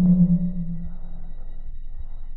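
Low drone in a film score: a steady low tone, loudest at the start, fades away over about a second and a half above a continuous low rumble.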